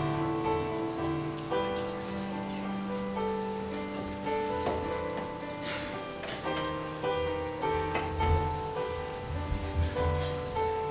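Electric keyboard playing soft sustained chords, each held for a second or so before it moves on. Light rustling and small clicks come over the music.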